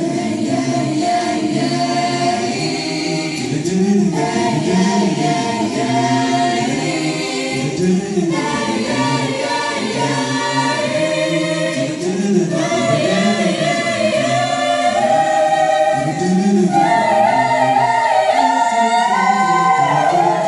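Choir of many voices singing in parts, with sustained chords; near the end the top voices step up to a higher held note and the singing grows slightly louder.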